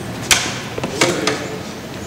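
A film clapperboard's hinged clapstick snapped shut once, a single sharp clap about a third of a second in, marking camera A, followed by a softer knock about a second in.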